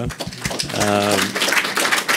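Audience applauding: a dense patter of hand claps.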